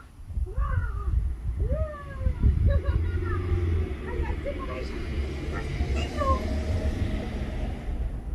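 Short excited vocal calls that slide up and down in pitch, several in the first three seconds, over a steady low rumble.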